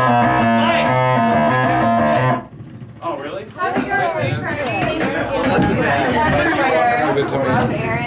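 Live electronic noise music from circuit-bent instruments. A buzzy tone steps between a few pitches and stops about two and a half seconds in. After a short pause, warbling, bending tones come in, mixed with voices.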